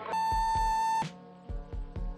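An answering machine's beep played back from a message tape: one steady, buzzy tone about a second long that cuts off suddenly, marking the break between recorded messages. Background music with a beat runs underneath.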